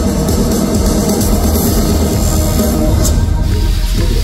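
Loud live pop music with an electronic dance backing and heavy bass, played over a concert sound system.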